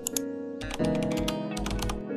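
Background music with sustained notes, overlaid with a computer-keyboard typing sound effect: one click near the start, then a quick run of key clicks through the second half.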